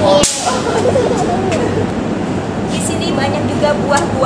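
A quick, sharp swish about a quarter second in, of the kind used as an edit transition effect. Voices talk over a steady low hum around it.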